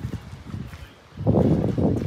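Footsteps of someone walking on a yard surface, then a louder rumbling gust of wind buffeting the microphone about a second in.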